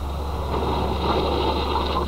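Car being driven on a wet skid pan: steady engine and tyre noise over a constant low hum.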